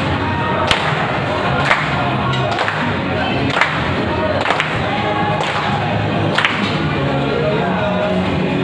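A group of restaurant staff clapping in unison, one sharp clap about once a second, over loud upbeat music with voices singing.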